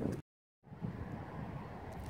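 The sound drops out to dead silence for a moment at an edit cut, then a faint low rumble of wind on the microphone in an open field.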